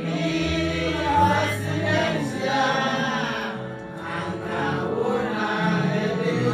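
A group of voices singing a song together over steady, held instrumental notes, at an even level with no breaks.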